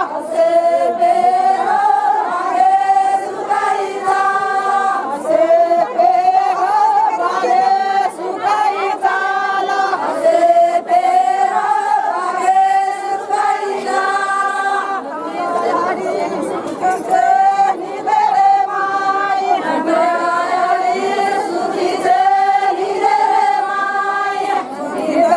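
A group of Banjara women singing a traditional folk song together, the same short phrase coming round every couple of seconds.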